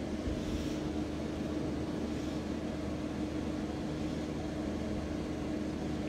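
Steady mechanical hum with one constant low tone, unchanging throughout: the room's background noise from a running appliance or fan.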